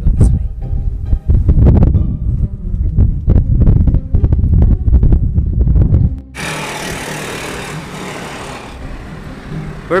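Loud, uneven low rumbling with faint music-like tones for about six seconds, then a sudden cut to a steady hiss of roadside traffic.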